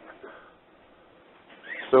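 A brief lull in a conversation: the last of a laugh fades out, leaving a faint, steady hiss, and a man's voice comes back in just at the end.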